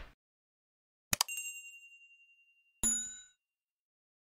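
Sound effects of a subscribe-button animation: a quick double click about a second in, then a bell-like ding that rings out and fades over about a second and a half, and a second, shorter chime near three seconds in for the notification bell.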